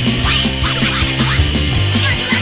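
Loud punk rock song: distorted electric guitar, bass and drums playing a fast, dense rhythm.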